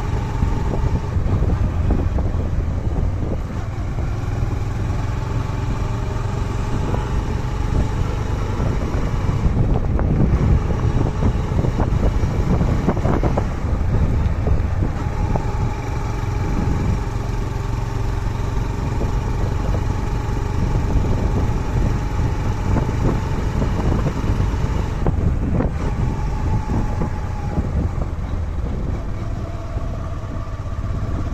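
Small motorcycle engine running steadily on the move, under a heavy low rumble of wind buffeting the microphone.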